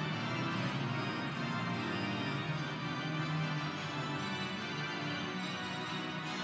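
Organ solo played with both hands on two manuals: a continuous flow of held chords with moving lines, without a break.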